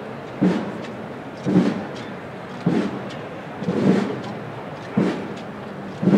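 Slow, evenly spaced thuds, about one a second and five in all, each with a low knock and a short scraping tail, marking the step of a Holy Week procession.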